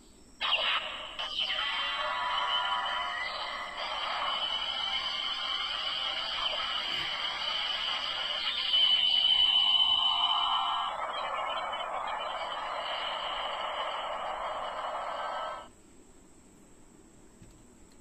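Chinese Bandai Black Spark Lens toy transformation device playing its Glitter Tiga finishing-move sound effect through its small built-in speaker: a music-like electronic effect, thin and without bass. It is loudest a little past the middle and cuts off sharply about two seconds before the end.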